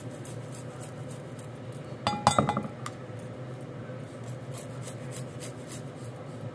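A quick run of clinks about two seconds in, each ringing briefly: a metal grater knocking against the rim of a glass Pyrex measuring bowl. Faint scattered light ticks come before and after.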